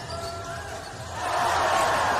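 Basketball game sounds in an indoor arena: the ball and players on the hardwood court, with the crowd's noise swelling sharply about a second in.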